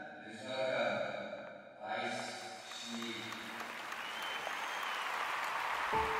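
Sustained music chords that break off about three seconds in, followed by a rising wash of crowd applause.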